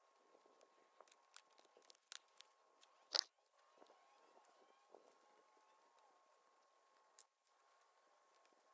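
Near silence with faint, scattered crackles and rustles of gloved hands working loose soil and picking out debris, with one sharper, louder scrape about three seconds in.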